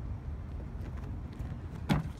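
A steady low rumble, then near the end a single sharp thud as a parkour runner's feet push off a wooden picnic table to launch into a flip.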